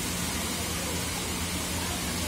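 Steady rushing splash of water falling from a water-park play structure's sprays and spouts into its shallow pool, with a low steady hum underneath.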